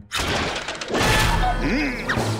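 Cartoon slapstick sound effects of a catapult being released: a sudden crash right at the start as the rope is cut, then a heavier crash with a deep rumble about a second in as the catapult arm slams down on the rooster.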